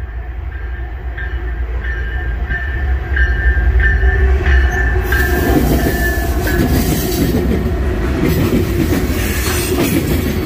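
Norfolk Southern diesel freight locomotives passing close by, their low rumble loudest about four seconds in, with a high ringing tone repeating about twice a second until about six seconds in. Then comes the steady rush and clatter of covered hopper cars rolling past.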